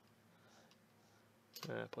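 Faint, sparse clicking of a computer keyboard and mouse as a dimension value is typed into the modelling software, in a quiet small room.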